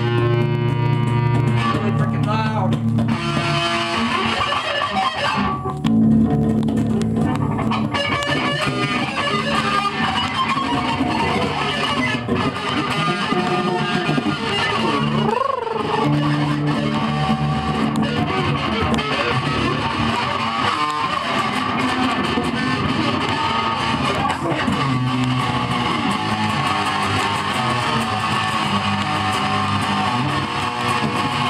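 Electric guitar played loud through an amp, a run of held notes and riffs, with one note sliding down and back up about halfway through.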